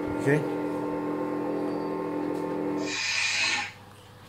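Lightsaber sound board's steady electronic hum from its speaker. About three seconds in there is a short hiss and the hum stops, as the blade is switched off.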